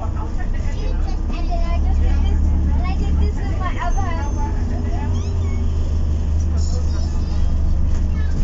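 Inside a moving Alexander Dennis Enviro400 MMC double-decker with BAE Systems hybrid drive: a steady low hum from the drivetrain, with indistinct voices of passengers talking over it.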